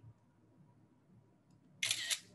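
A camera-shutter sound from a device taking a photo: a brief two-part click about 1.8 seconds in, after near silence.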